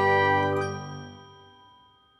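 Bell-like chord of an animated logo jingle ringing out and fading away over about two seconds.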